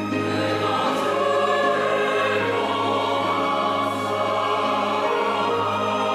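Mixed church choir singing a hymn anthem in Korean, accompanied by a string ensemble of violins and cellos, in long held chords.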